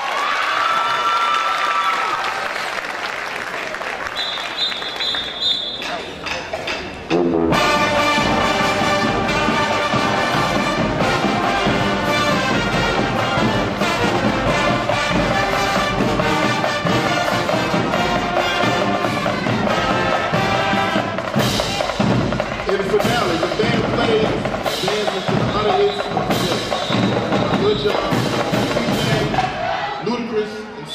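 High school marching band playing, brass over drums. About seven seconds in, a softer passage cuts abruptly to loud full-band playing with a steady drum beat.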